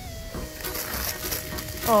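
Soft background music holding a steady note, with faint crinkling of plastic wrap as a packaged toy is lifted out of a cardboard box. A woman's voice begins right at the end.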